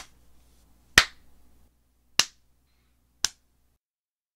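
Four sharp snap-like clicks, roughly a second apart, the loudest about a second in, added as hit sound effects while minifigures are knocked over.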